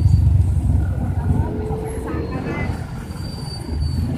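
Road traffic with a large truck's engine close by: a low, steady rumble, loudest in the first second or so and easing off after.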